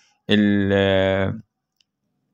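A man's voice holding one level vowel, a hesitant 'aah', for about a second, then cut off sharply to dead silence.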